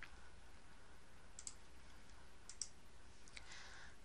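About four faint computer mouse clicks, spread out and sudden, over a steady low hum.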